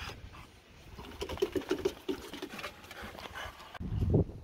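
French bulldog breathing noisily through its short nose, with a quick run of about seven short, low snorts between one and two seconds in.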